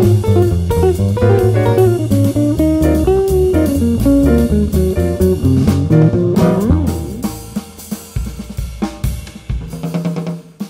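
Live jazz band: an electric jazz guitar solos over bass and drum kit. About seven seconds in, the guitar and bass drop away and the drum kit plays on alone, quieter, with scattered hits.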